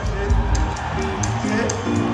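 A live rock band playing softly in an arena: a cymbal ticking steadily about three times a second over held guitar notes and bass.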